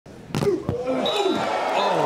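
Two sharp smacks of a beach volleyball being hit at the net, about a third of a second apart, followed by a man's voice exclaiming "oh, wow".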